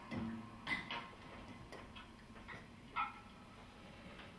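The hushed close of a live jazz piece: a soft low note fades out in the first half-second, then a quiet room with a few small scattered clicks and taps.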